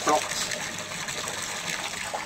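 A steady stream of liquid pouring from the side of a boat and splashing into the lake, a continuous gushing sound. A short voice sound comes right at the start.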